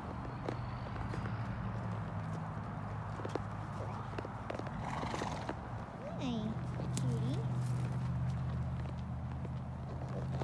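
A horse walking on dirt, its hoof footfalls heard as scattered soft knocks. About six seconds in come two short calls whose pitch slides down and back up.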